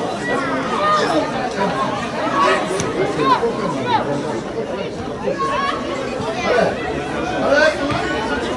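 Several overlapping voices calling and chattering at a women's football match, with no words clear; the pitch keeps rising and falling as in shouted calls.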